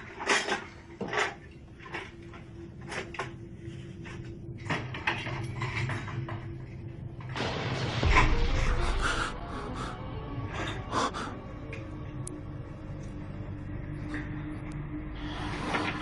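Horror film soundtrack: a few sharp knocks and bumps in the first seconds over a low held tone, then a loud rushing swell with a deep boom about eight seconds in, and a smaller swell near the end.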